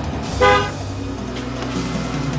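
Car horn giving one short honk about half a second in, right after a longer honk.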